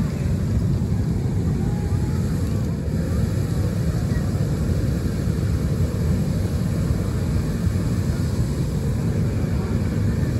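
Engine-driven inflator fan running steadily, blowing cold air into a hot air balloon envelope lying on its side: a constant low engine-and-propeller drone with no change in pitch.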